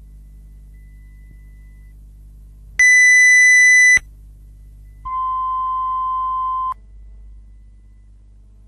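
Electronic test tones: a loud high-pitched beep lasting about a second, then, after a short gap, a lower steady tone lasting about a second and a half, both starting and stopping abruptly. A steady low electrical hum runs underneath.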